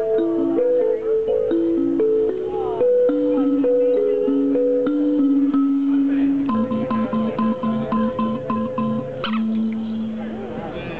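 A small toy instrument played as a simple melody of held notes, two lines moving step by step together. Later one note repeats about four times a second, then a click and a held low note.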